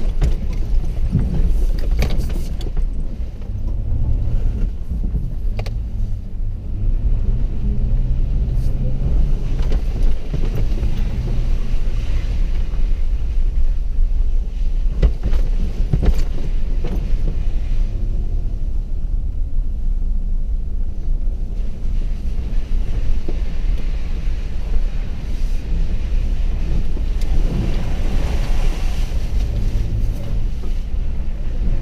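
Inside a vehicle's cabin while driving on a rough dirt road: a steady low rumble of engine and tyres, broken by occasional sharp knocks as the vehicle jolts over ruts and bumps.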